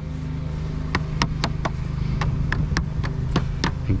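White rubber mallet tapping lead chimney flashing, a quick run of light knocks about three to four a second starting about a second in, closing the fold tight against the brick. A steady low hum runs underneath.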